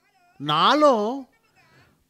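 Speech only: a man's single drawn-out word, its pitch rising and falling, from about half a second in to just past one second.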